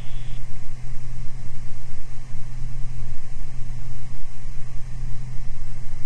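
Cabin noise of a Beechcraft Baron G58 in flight: its two piston engines and propellers drone steadily as a low hum under a hiss.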